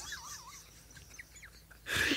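A faint laugh trailing off, then a quick breath drawn in near the end.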